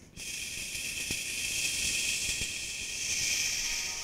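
A steady hiss of filtered noise from a loop station, swelling slightly about three seconds in, while the pitched parts of the looped beat drop out for a break. A few faint ticks sound under it.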